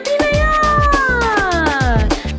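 A long, drawn-out cat meow that rises a little and then slowly falls in pitch across about two seconds, laid over a birthday-song backing with a steady beat.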